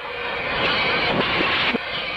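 A loud, harsh, noisy sound effect from an old cartoon soundtrack: a dense jumble of rough noise and overlapping tones, held for about two seconds.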